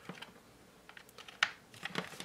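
A few light plastic clicks and taps as a charging plug is pushed into the electric pencil sharpener's plastic base and the unit is handled, the sharpest click about one and a half seconds in.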